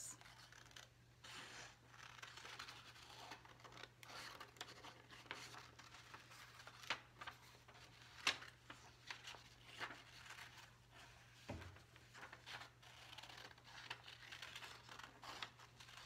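Scissors snipping through green construction paper in short irregular cuts, with the paper rustling as it is turned. Faint, over a low steady hum.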